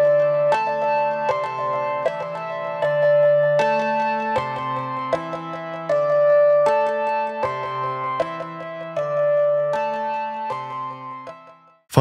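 Eurorack modular synthesizer playing a melodic sequence of plucked-sounding notes, one every half second or so, through the patch.Init() module's Pure Data delay, whose echoes are synced to the clock. The sound fades out near the end.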